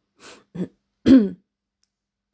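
A woman clearing her throat: a soft breath, a short vocal sound, then one louder throat-clear about a second in, falling in pitch.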